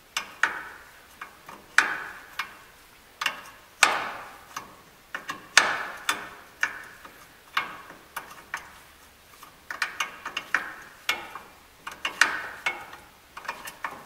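Ratchet wrench clicking in short strokes as a ball joint nut is backed off the steering spindle, the nut turning freely with no load on it. Sharp metallic clicks come irregularly, about one or two a second, each ringing briefly.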